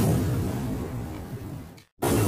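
A rumbling whoosh sound effect that starts abruptly, fades away over nearly two seconds, then cuts off to silence just before the end.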